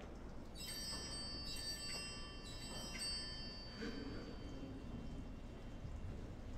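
A bell struck three times about a second apart, each stroke ringing on in several high, clear tones that fade over a few seconds. It is the signal that Mass is about to begin.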